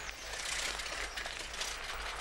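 Bicycles being ridden away over a gravel path: a steady noise of tyres on gravel.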